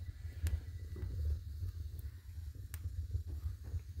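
Wood stove fire drawing air through the firebox: a steady low rumble of the draft, with a few sharp crackles from the burning logs. The stove is "breathing", a good draw that shows the flue pipe is clear again after being plugged with creosote.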